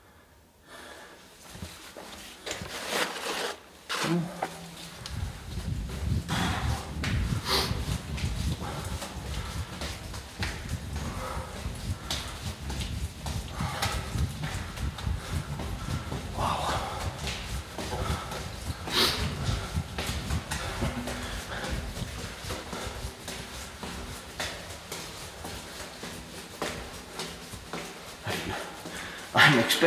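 A person walking through a narrow stone tunnel: footsteps and knocks on a debris-strewn floor and breathing close to the microphone, in an enclosed, echoing space. A low rumble sets in about four seconds in and runs on.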